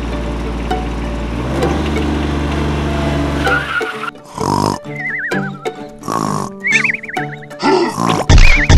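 A steady low engine drone, rising slightly in pitch, runs for about four seconds as the mini tractor drives in. It gives way to music with two wavering, falling whinny-like calls, about a second and a half apart.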